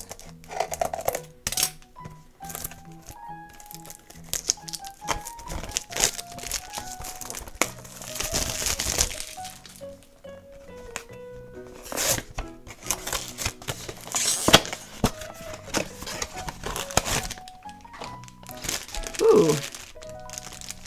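A cardboard blind box being handled and opened, and the black plastic bag from inside it crinkled in the hands, in irregular bursts. A simple background melody plays underneath.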